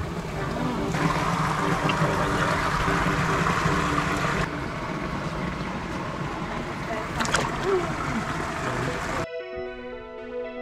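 Running, splashing water of a backyard pond with faint background music under it; about nine seconds in it cuts abruptly to music alone.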